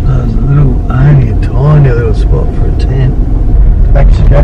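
Low, steady rumble of a car driving slowly, heard from inside the cabin, with a person's voice sounding over it in short rising and falling phrases.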